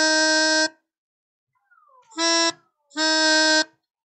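Melodica playing single held reed notes: one note ending just under a second in, then a short note about two seconds in and a longer one near the end. The notes show the note E lowered a semitone to E-flat.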